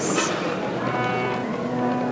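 A short hiss, then about a second in a steady, low sustained musical drone sets in: the opening of the accompaniment music for a dance performance.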